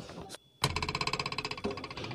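A short edited-in musical sound effect at a scene change: after a brief dropout, a pitched tone pulsing very rapidly for about a second, then fading into a quieter held tail.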